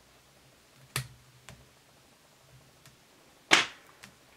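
Small fly-tying scissors snipping fibres: a sharp snip about a second in and a louder one near the end, with a couple of fainter clicks between.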